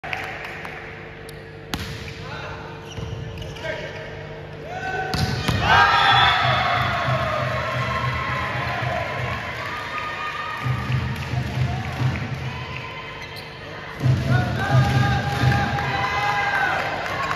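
A volleyball being struck and bouncing on an indoor court, a few sharp knocks, followed from about five seconds in by players' shouts and voices over music in the hall.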